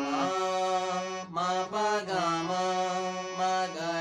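Harmonium playing a slow run of held notes in raag Bhimpalasi, with a man's voice singing the notes along with it. There is a short break about a second in.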